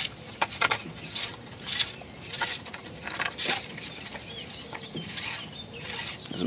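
A long fishing pole being pulled in hand over hand, making a string of short swishes and scrapes about every half second to second.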